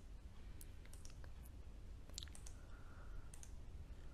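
Faint, low room hum with a handful of small, sharp clicks scattered irregularly through it.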